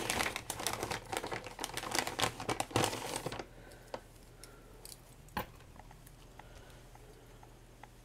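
A packet of wipes crinkling as a wipe is pulled out, a dense crackle for about three and a half seconds, followed by a few faint clicks and one sharper tick.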